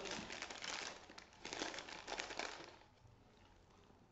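Plastic bag and paper packet crinkling as hands open them, an irregular crackling that stops about two and a half seconds in, leaving a quiet room.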